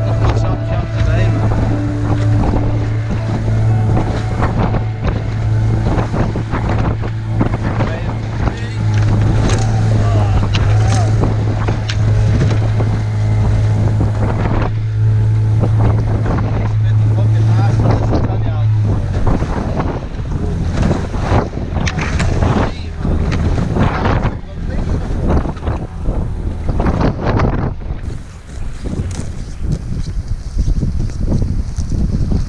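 Small boat's outboard motor running at a steady hum, with heavy wind buffeting the microphone and choppy water against the hull. About two-thirds of the way in, the motor note drops and weakens, and the wind and water take over.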